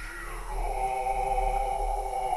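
Low male voices singing a slow chant in long held notes, which swell in about half a second in.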